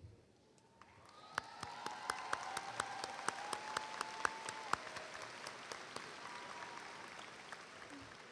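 Audience applause from the stands. It starts about a second in and slowly fades toward the end.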